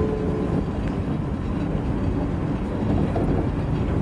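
Restored 1904 tram running along a city street, a steady rumble of the moving car and road noise heard from on board.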